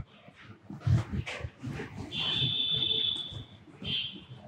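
Marker pen writing on a whiteboard: light taps and scratches of the strokes, and a high squeak lasting over a second about halfway through, then a shorter one near the end.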